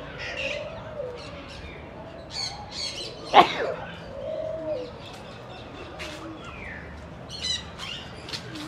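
Captive birds in aviaries calling: many short high chirps and tweets, with low cooing calls now and then. One brief, loud, sharp sound cuts through about three and a half seconds in.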